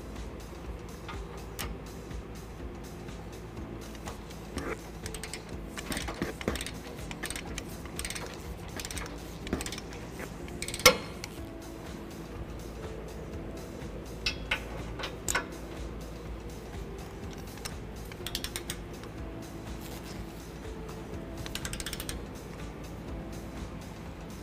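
A click-type torque wrench ratcheting on a hitch mounting nut over background music. A sharp click comes about eleven seconds in and a couple more a few seconds later: the wrench clicking as the nut reaches its set torque of 75 foot-pounds.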